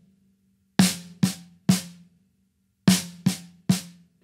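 Snare drum played with sticks as a three-stroke phrase, left, right, left, about half a second between strokes, played twice; the drum's ring hangs on between the groups.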